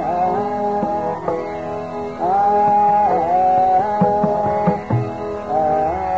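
Hindustani khayal singing in Raga Yaman Kalyan: a male voice holds long notes and glides between them over a steady drone, with tabla strokes underneath.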